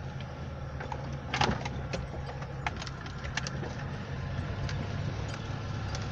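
A truck's engine running steadily, heard from inside the cab as a low hum, with a few light clicks and rattles from inside the cab.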